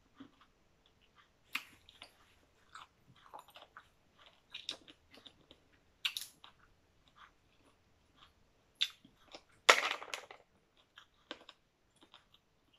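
A person chewing and crunching food close to the microphone, in short irregular bites with small clicks between them; the loudest crunch comes about ten seconds in.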